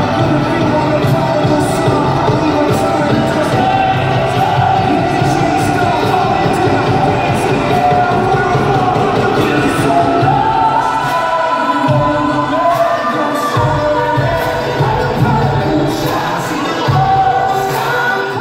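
Live rock band playing a song with a lead vocal, heard from the stands of a large arena, with crowd noise under the music. The bass drops out briefly about twelve seconds in.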